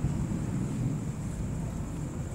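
Steady low rumble of room and microphone noise with a faint, thin high-pitched whine; no distinct event.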